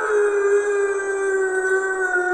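One long howl held at a nearly steady pitch, with its pitch sagging slightly toward the end.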